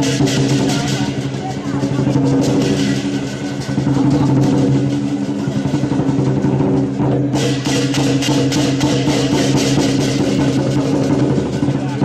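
Dragon-dance music: rapid drum and cymbal strikes over a steady, sustained pitched tone. The cymbal strikes pause briefly about six seconds in, then resume.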